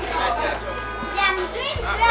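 Several children's voices calling and chattering, some in high rising shouts, over background music with steady low bass notes.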